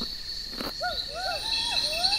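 Western hoolock gibbon calls: a quick series of rising and falling hooting glides, starting about a second in, over the steady high-pitched trill of insects.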